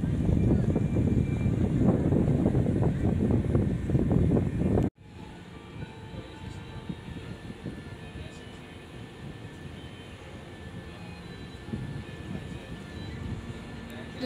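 A loud, low rumble that cuts off suddenly about five seconds in. After it comes a much quieter outdoor city ambience with faint background music.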